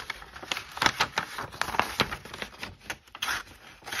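The blade of a Tactile Knife Co Rockwall pocket knife cutting through a sheet of printer paper, a ragged run of crackling, scratchy snags with a short lull near the end. The edge is not super sharp and catches on the paper instead of slicing cleanly.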